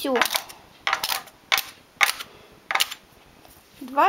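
A string of short, sharp, irregular clicks from hands working the metal needles on a domestic knitting machine's needle bed.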